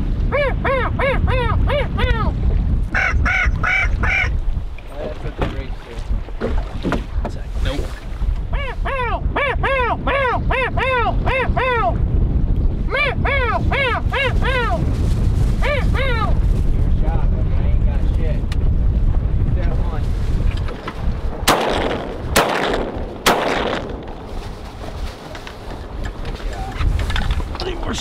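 Duck calling in repeated runs of quick, arching nasal notes over steady wind and water noise, followed near the end by three shotgun shots about a second apart.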